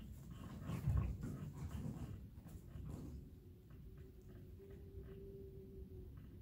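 A person shifting on an exercise mat into a press-up position: a thump about a second in with rustling around it, then a faint steady whine over the last few seconds.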